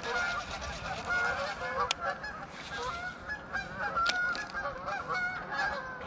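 A flock of geese honking and calling over one another, many wavering calls overlapping continuously, with two sharp clicks, one about two seconds in and one about four seconds in.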